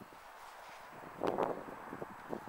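Light wind on the microphone, with a brief rustle lasting about half a second a little after a second in, as a car's rear door is swung open.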